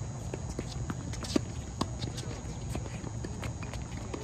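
Tennis balls struck by rackets and bouncing on a hard court during a doubles rally: a run of sharp pops at uneven intervals, the loudest about one and a half seconds in, over a steady low rumble.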